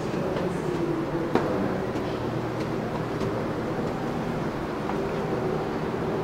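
Steady low mechanical hum with a rushing noise under it, and one sharp knock about a second and a half in.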